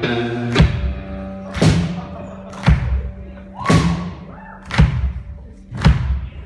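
One-man-band blues: a kick drum beating steadily about once a second under a guitar's sustained notes, with a brief higher held note about two-thirds of the way through.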